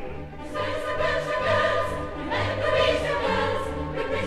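Operetta chorus singing with orchestral accompaniment, many voices together with vibrato over a steady bass line.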